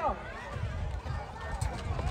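Overlapping voices of football players and spectators calling out across an outdoor pitch, with a low irregular rumble underneath.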